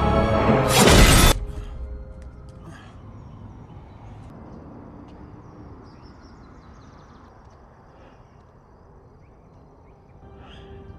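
Film soundtrack: loud music ends in a loud crash about a second in, then cuts off abruptly. What follows is a low, quiet steady hum with a few faint scattered clicks.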